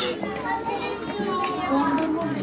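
Background chatter of children's voices, high-pitched and indistinct, with no clear nearby speech.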